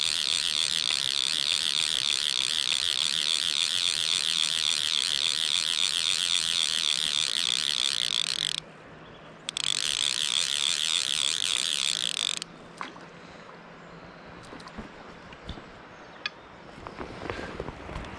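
Fly reel's click-and-pawl check ratcheting in a fast, steady buzz as line runs through it while a hooked fish is played; it breaks off for under a second partway through, resumes, then stops, leaving the soft sound of river water.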